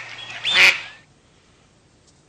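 Two short, squawking cries about half a second apart, the second gliding up and back down in pitch; a cartoon-style comic vocal sound, ending about a second in.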